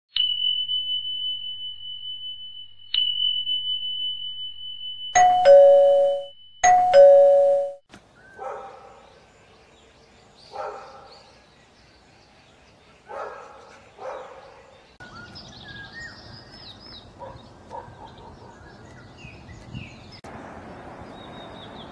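A high chime is struck twice and rings on with a wavering decay. Then a two-note ding-dong chime sounds twice. After that a distant dog barks four times, and birds chirp over a faint background noise.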